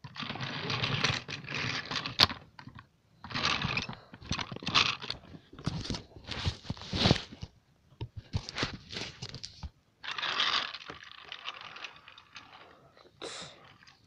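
Handling noise around plastic toy trains and track: intermittent rustling and scraping in bursts of a second or two, with a few sharp clicks.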